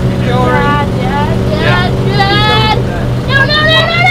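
Motorhome engine and road noise heard inside the cab while driving: a steady low drone.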